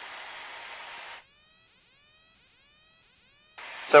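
Steady hiss of an open aircraft-headset intercom microphone for about a second, cutting off abruptly to near silence as the voice-activated squelch closes; the hiss comes back shortly before speech resumes near the end.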